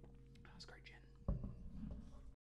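Faint breathy mouth sounds after a drink of water, then a single sharp thump just past the middle, the loudest sound, as the glass is set down.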